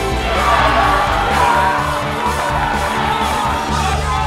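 Background music with a group of boys cheering and yelling over it; the shouting dies down near the end, leaving the music.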